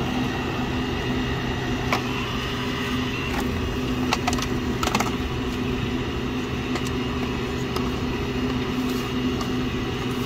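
Steady hum of a vented drinks machine running on the counter, with a few light clicks and knocks of plastic cups and lids being handled and set into a cardboard carrier.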